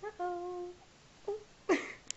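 A four-month-old baby vocalising: a held, steady coo, a short note about a second later, and a brief, louder, breathy falling sound near the end.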